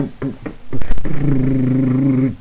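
A young man's voice: quick laughing syllables, then a short sharp vocal burst and a held low vocal note of about a second.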